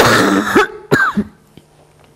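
A woman coughing and clearing her throat into a close microphone: a harsh burst at the start and a second, shorter one about a second in. Her voice is in a poor state.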